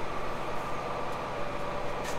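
Steady mechanical hum and hiss with a faint constant whine, with no distinct knocks or changes.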